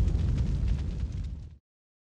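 The fading low rumble of a boom sound effect in a TV channel's logo sting, which cuts off abruptly about one and a half seconds in.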